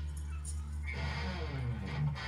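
Live band on stage between numbers: a low held bass note rings steadily, and in the second half a pitched sound slides downward in pitch.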